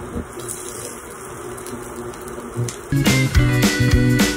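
Veggie nuggets sizzling in hot oil in a skillet. About three seconds in, background guitar music with a steady beat starts and drowns it out.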